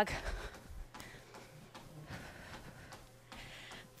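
Faint sounds of a runner jogging on a treadmill, picked up by her headset microphone: breathing and soft footfalls on the belt, over a low steady hum.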